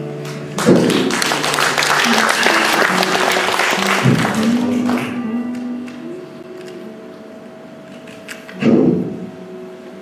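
Background stage music with sustained tones, and audience applause breaking out about half a second in and fading away by about five seconds. A short louder burst of sound comes near the end.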